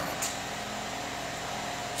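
Steady room hum with a faint hiss, unchanging throughout, with no sudden sounds.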